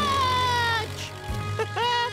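A cartoon character's drawn-out, slightly falling "ooh" of surprise, then a short rising vocal sound near the end, over background music.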